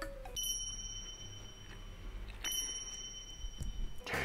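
Two bright, bell-like chimes about two seconds apart, each ringing clearly for over a second, over quiet background music.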